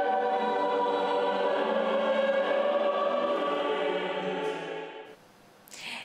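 A choir singing with a string chamber orchestra in slow, sustained chords of sacred music. The music fades away about five seconds in.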